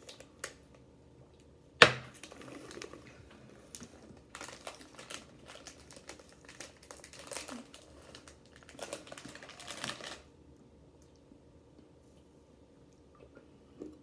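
Plastic snack bag crinkling as it is handled and opened, with one sharp snap about two seconds in, the loudest sound here. The crinkling goes on irregularly for several seconds, then stops.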